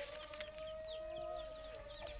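Chickens clucking, with small birds chirping in short high calls over a steady faint tone.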